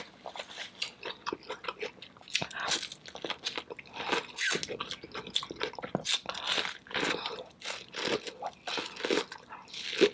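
Biting kernels off an ear of corn on the cob and chewing with the mouth close to the microphone: an irregular run of sharp crackles and clicks with wet mouth sounds.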